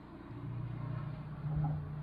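A low, steady engine rumble in the background, swelling slightly about one and a half seconds in.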